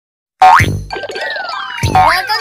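Animated logo intro music with cartoon sound effects. A sudden boing-like hit with a quickly rising pitch comes about half a second in, followed by sliding tones falling in pitch and a second hit near the end.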